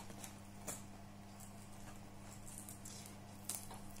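Faint handling of a cardboard tea box: light rustling and a few small clicks, about a second in and again near the end, over a steady low hum.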